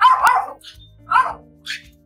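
A small dog yapping: two loud yaps about a second apart and a fainter one near the end, over steady background music.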